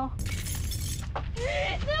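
A shattering crash, something brittle breaking, lasting just under a second. A high, raised voice cries out near the end.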